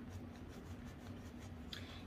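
Faint rubbing and light scratching as a silicone lip exfoliator is wiped clean, over a low steady hum.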